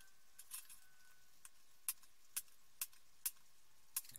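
Faint, sparse light clicks, about four in the second half roughly half a second apart, as a soldering iron tip and solder wire touch the resistor leads on a circuit board while they are soldered.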